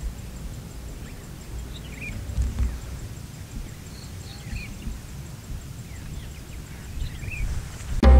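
Distant low rumble of a lava-dome rockfall and pyroclastic flow sliding down Mount Merapi's slope, swelling about two seconds in. Small birds chirp faintly and an insect ticks steadily in the background.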